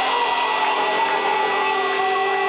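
Live rock band playing an improvised piece, with long held electric guitar tones over a dense, steady wall of sound.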